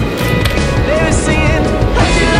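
A song with vocals plays over the sound of a longboard's wheels rolling on asphalt.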